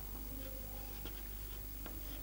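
Chalk writing on a chalkboard: faint, scattered scratches and small taps of the chalk against the board.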